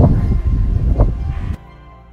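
Wind buffeting a phone's microphone, a loud low rumble with brief fragments of a woman's voice, cut off suddenly about one and a half seconds in. Faint music follows.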